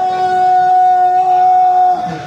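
A man's voice, amplified through the loudspeakers, holds one long, steady, high sung note in a qasida recitation.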